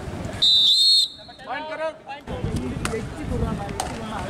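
A referee's whistle blown once, a loud shrill blast of about half a second near the start. It is followed by a brief shout and outdoor crowd voices with a few sharp clicks.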